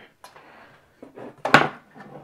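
Hands handling a PTZ camera on a desk: a soft rustle of handling, then one sharp knock about one and a half seconds in as the camera is bumped.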